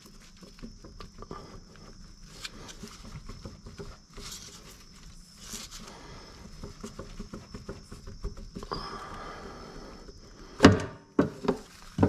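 Crank pulley being worked off the crankshaft snout by hand: low metal scraping and rustling, then a few sharp clanks near the end as it comes free.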